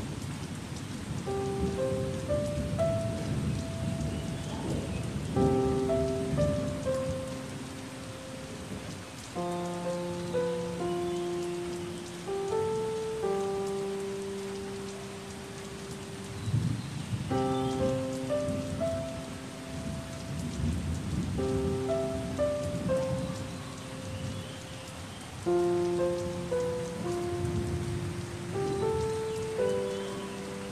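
Steady rain, with a slow, soft piano melody laid over it in short phrases that recur every few seconds.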